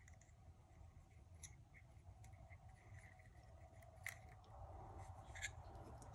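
Near silence with a few faint clicks and scratches as a metal pick is worked inside a Zippo lighter's insert, straightening the wick.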